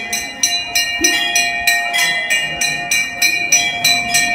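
A temple hand bell rung rapidly and steadily, about four strokes a second, each stroke ringing on with bright high tones, with a steady lower tone sounding beneath.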